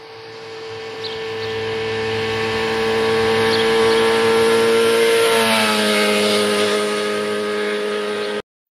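Motorcycle engine approaching at speed, growing louder, then passing by: its pitch drops suddenly about five seconds in and stays lower as the bike speeds away. This is the Doppler effect.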